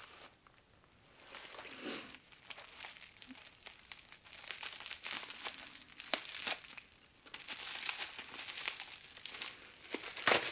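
Plastic packaging crinkling and tearing as a parcel is unwrapped by hand, with irregular sharp crackles starting about a second in and growing busier near the end.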